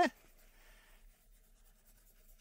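Faint rubbing of a wipe soaked in isopropyl alcohol cleaning old thermal grease off a server CPU heatsink's copper base.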